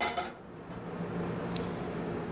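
Carbon steel fry pan set down on a stovetop with a short metallic clatter, followed by a steady low hum that slowly grows louder as the burner heats the pan.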